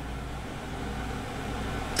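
Steady low room hum with faint background noise, with no distinct events.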